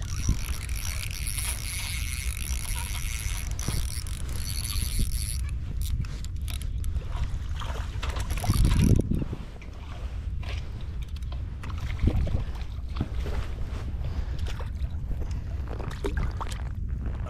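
Rumble of wind on the microphone, with rapid mechanical clicking and rod and line handling sounds while a hooked crappie is worked in on a long graphite pole. A high steady whine sounds over the first five seconds or so, and there is a louder thump near the middle.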